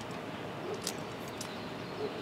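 Quiet steady outdoor background noise, with a faint high tick a little under a second in.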